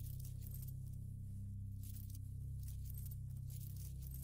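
Intro soundtrack: a steady low bass drone with light, bright clinks of coins falling over it.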